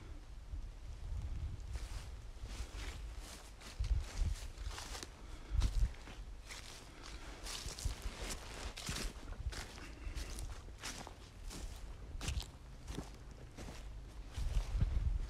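Footsteps walking over dry, frost-patched winter grass, an irregular series of steps, with two louder low thumps about four and six seconds in.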